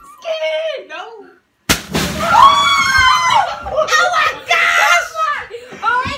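A large water balloon filled with Orbeez bursts as it is cut: a sudden pop a little under two seconds in, with its water and beads gushing into a plastic tub, followed by loud screaming and excited shouts from children.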